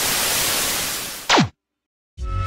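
TV-static hiss used as an editing sound effect. It fades slightly, then ends in a quick downward sweep in pitch and cuts off to silence.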